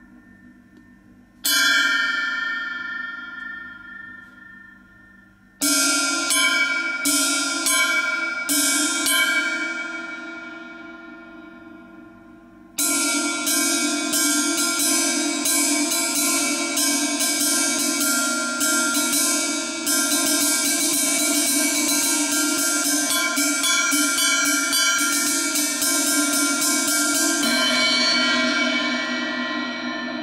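An 18-inch Triplesix cymbal with a clear, bright ring, struck with a wooden drumstick. A single hit about a second and a half in rings out, then a handful of quick hits follow around six to nine seconds. From about thirteen seconds it is played with steady repeated strokes that quicken around twenty seconds, then stop shortly before the end and ring down.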